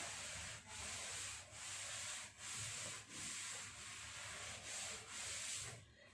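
Cloth wiping chalk off a blackboard: about eight even rubbing strokes, a little more than one a second.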